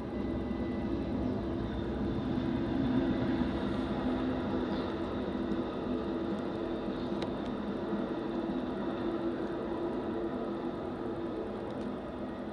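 A BNSF intermodal freight train and a silver passenger train rolling past together, making a steady rumble of wheels on rails with a low, even drone through it.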